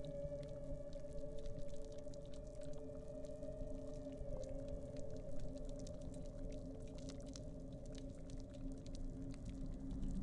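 A dark, steady drone of several low sustained tones layered together, one of them wavering slightly in pitch about four seconds in, with faint crackling clicks throughout.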